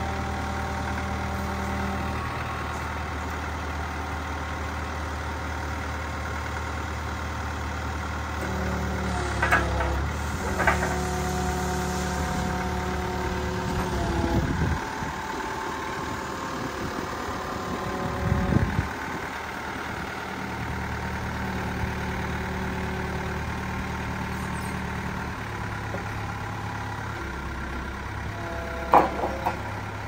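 Diesel engine of an ASEA GDA 63 forklift running, its engine note shifting several times as the forks are worked and lowered. A few short clunks come in, two about ten seconds in and one near the end.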